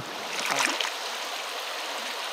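Shallow stream water flowing steadily, with a brief louder rush of water about half a second in.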